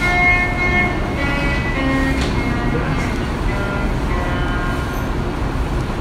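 Music played over loudspeakers, heard from the audience: a slow melody of held notes that move from pitch to pitch, over a steady low rumble.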